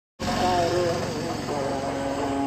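A voice singing a melody in held notes that step up and down in pitch, as in a song with backing music.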